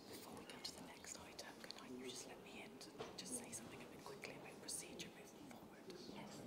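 Faint whispered voices, with a few small clicks and rustles.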